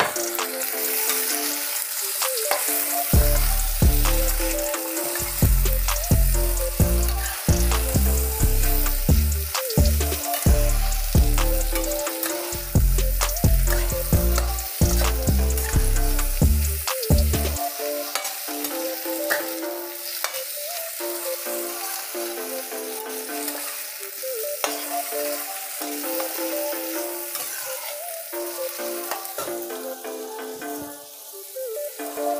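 Chicken feet frying in hot oil in a metal wok, sizzling steadily, while a metal spatula scrapes and clicks against the wok as they are stirred.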